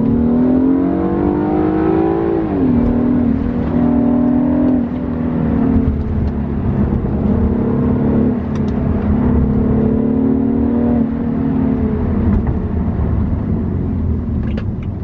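BMW 328i's 2.0-litre turbocharged four-cylinder engine heard from inside the cabin. It rises in pitch under acceleration for about two and a half seconds, then drops sharply as the ZF eight-speed automatic shifts up. A second, smaller rise and upshift come about five seconds in, and the engine then runs at a mostly steady pitch.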